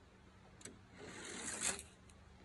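Small toy car rolling down a plastic playground slide: a faint click, then a rolling rush that grows louder for under a second and stops.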